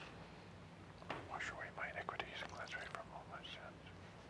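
A man whispering a quiet prayer, from about a second in until near the end. It is typical of the priest's inaudible prayers at the altar during the offertory and hand-washing.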